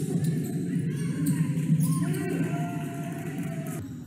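Live indoor basketball game sound: a ball bouncing on a hardwood court amid a mix of player and spectator voices, all echoing in a large gym. The sound changes abruptly just before the end.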